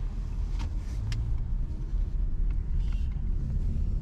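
Car running, heard from inside the cabin: a steady low rumble, with two sharp clicks about half a second and a second in.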